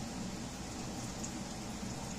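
Steady faint hiss of room noise, with no distinct snips heard.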